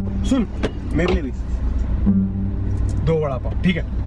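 Short bursts of Hindi speech over a steady low rumble of car cabin noise.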